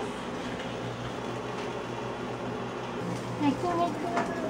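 Sliced vegetables frying in a pan on a kitchen stove: a steady sizzling hiss over a low hum. A short voice sound comes near the end.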